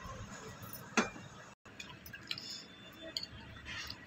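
Faint room noise with one sharp click about a second in and a few faint ticks and clinks later; the sound drops out briefly in the middle at an edit.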